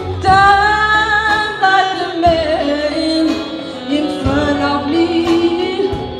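Live band music: a woman sings a long held note that then slides into a wavering melody, over saxophones and drums.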